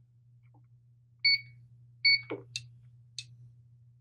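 PRS-801 resistance meter beeping twice, two short high beeps about a second apart, as it runs a resistance test on the chair arms. A few light clicks follow, over a steady low hum.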